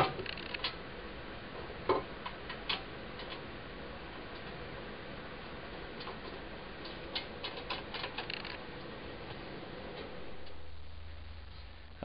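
Small metallic clicks and ticks of a wee bolt being fitted and threaded back into the sheet-metal belt cover of a wood lathe's headstock by hand: one sharp click at the start, a few more over the next seconds, then a quick run of light ticks.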